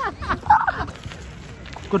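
A man laughing excitedly in a few quick bursts, the loudest about half a second in.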